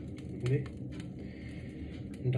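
A man's voice makes one short spoken sound about half a second in, over low steady room noise with faint scattered clicks.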